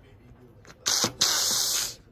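Two short bursts of hissing: a brief one just before the middle, then a longer one lasting most of a second.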